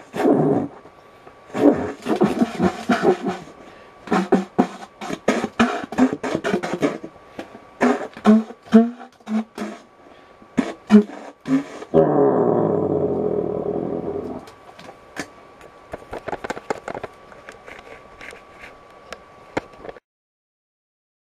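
Improvised reed-instrument playing in short, broken phrases and quick staccato notes. About twelve seconds in comes a long note that slides down in pitch and fades away, followed by a few sparse, quieter sounds.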